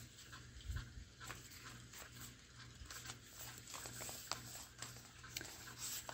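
A quiet pause: a faint steady low hum with scattered soft clicks and one low thump about three quarters of a second in.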